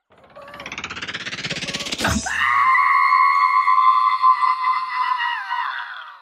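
A long, loud, high-pitched scream, climbing in pitch for about two seconds, then held high and steady for about four more, with a sharp click where the climb ends.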